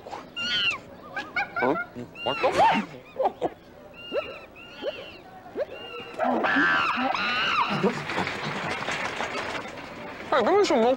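Chimpanzee calling: short hoots and squeals that rise and fall in the first few seconds, then a louder, busier stretch of overlapping calls from about six seconds in.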